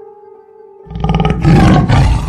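A tiger roar bursts in suddenly a little under a second in and is loud through the rest, cutting over a quiet held-note music drone.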